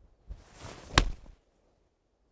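An 8-iron swung through and striking a golf ball: a short rush of the swing around one sharp click of club on ball about a second in. The contact was thin, by the golfer's own account.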